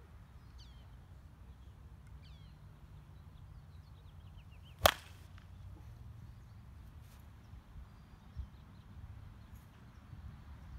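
A baseball bat striking a ball off a batting tee: one sharp, loud crack about five seconds in.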